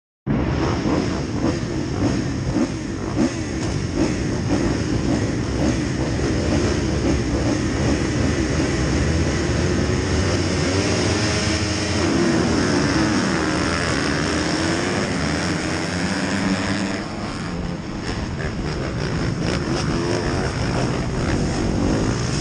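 A field of motocross bikes revving hard on the start gate, then accelerating away together at full throttle about halfway through. Engine pitch rises and falls through gear changes, with a brief easing off near the end. Heard from a camera on a rider's helmet.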